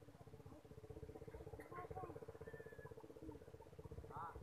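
Faint outdoor background: a steady, pulsing hum with a few faint, short, squeaky chirps scattered through it.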